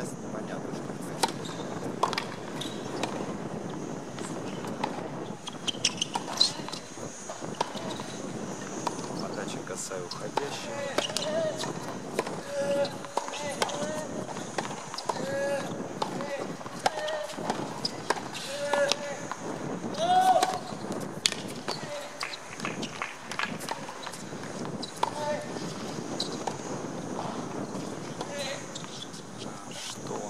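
Tennis balls struck by rackets and bouncing on a hard court, irregular sharp pops over an outdoor background of voices talking.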